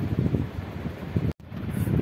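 Low, rough rumble of air buffeting a phone microphone, with no clear voice in it. About a second and a third in, it is broken by a brief, sudden dropout to silence.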